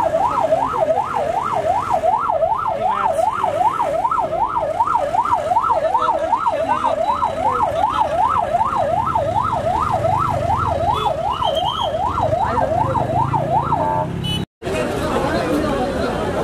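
Police pickup's siren wailing rapidly up and down, about two and a half sweeps a second, with a low rumble beneath it in the second half; the siren stops about 14 s in, followed by crowd chatter.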